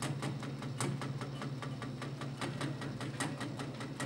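Steel-string acoustic guitar played alone in an instrumental passage, picked or strummed in a quick, even rhythm over a held low note.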